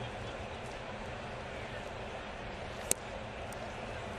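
Ballpark crowd murmuring steadily, with one sharp pop about three seconds in: a pitch smacking into the catcher's mitt for a strike.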